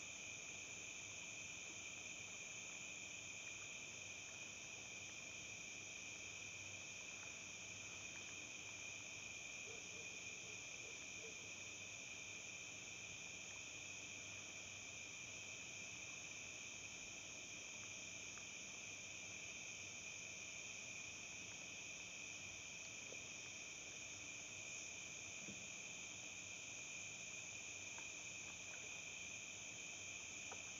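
A faint, steady high-pitched drone that holds unchanged throughout, with no beat or melody.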